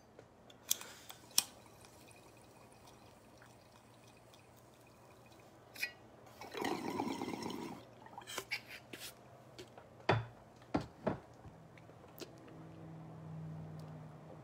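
Water bong bubbling as smoke is drawn through it: a gurgle of about a second roughly halfway through, after a couple of sharp clicks about a second in.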